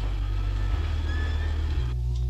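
Deep, steady rumble from a 1978 TV science-fiction soundtrack, with a faint hiss and thin, high electronic tones drifting above it.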